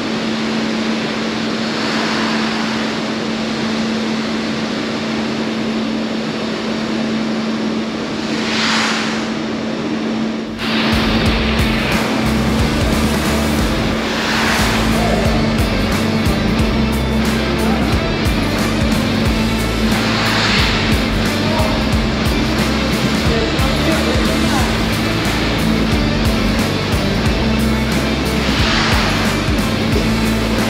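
Moving-carpet indoor ski slope running, with a steady motor hum and the rush of the carpet under the skis. About ten seconds in, upbeat background music with a steady beat starts and plays over it.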